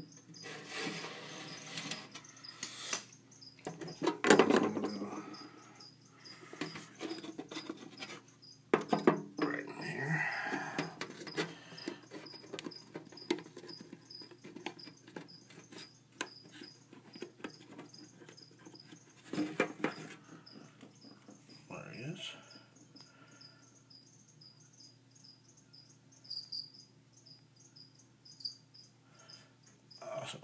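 A cricket chirping in a regular, steady rhythm, over clicks, knocks and rubbing from clear plastic cups and tubs being handled.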